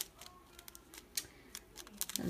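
Faint scattered crinkles and ticks of a small clear plastic pocket being handled and folded over to be sealed.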